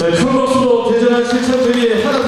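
Many voices chanting a slogan in unison, drawn out on one long, steady held note.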